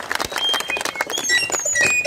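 Audience applause dying down into scattered claps, with birds chirping in short high calls over it.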